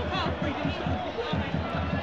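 Football crowd noise heard through a radio commentary feed, a low, unsteady rumble, with the tail of a commentator's word at the start.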